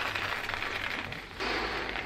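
Breath blown into a balloon as it is inflated by mouth: a steady breathy rush of air that grows stronger about one and a half seconds in.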